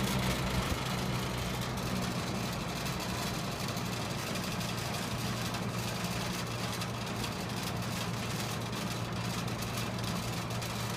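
1972 Lasko Model 4700 20-inch box fan running: a steady rush of air from the spinning blades over a low, even motor hum.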